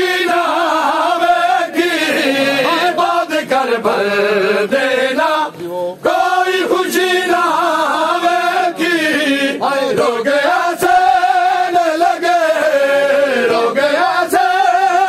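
A group of men chanting a Punjabi noha, a Shia lament, together: long, wavering held lines with a brief break about six seconds in.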